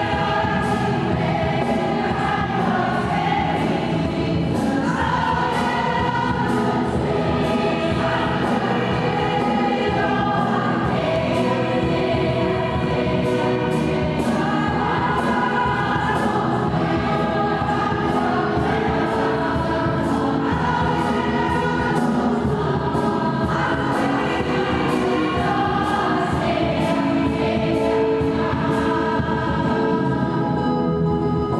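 A mixed choir singing a hymn in a reverberant church, accompanied by an electric keyboard and a drum kit keeping a steady beat.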